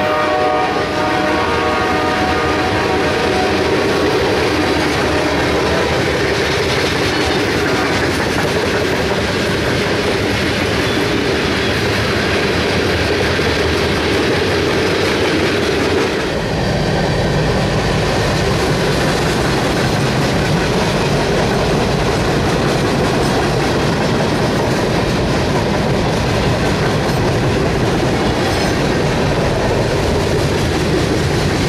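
A freight train horn chord fades out in the first few seconds as BNSF diesel locomotives pass, giving way to the steady rumble and clatter of freight cars rolling by. About sixteen seconds in, the sound jumps to a closer, lower rumble of covered hopper cars passing.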